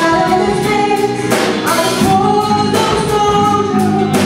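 Live acoustic ensemble performing: voices singing held notes together over guitars and other acoustic instruments.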